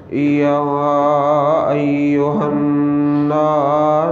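A man's voice chanting Quranic recitation in Arabic in the melodic tajweed style, holding long, wavering notes. It is heard through a microphone and loudspeaker with room echo.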